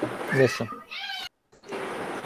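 A man's voice saying a single word over a video call. About a second in there is a short high-pitched sound, and then the call audio cuts out completely for a moment and comes back as a steady hiss.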